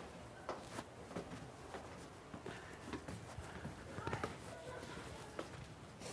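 Faint footsteps on a hard floor, a scatter of light taps, with faint voices in the background.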